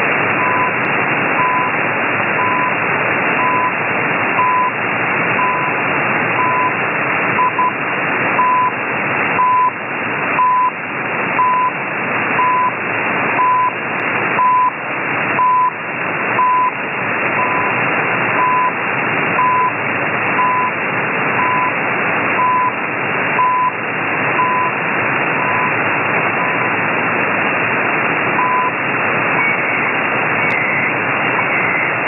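CHU Canada shortwave time signal on 7850 kHz, received in upper sideband: a short 1 kHz tone pulse once a second over loud shortwave hiss that swells and fades. The pulses stop shortly before the end, and a faint data tone begins right at the end.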